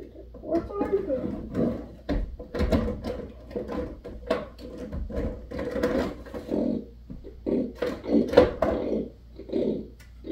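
Indistinct talking: a person's voice, with words that cannot be made out, continuing through the whole stretch.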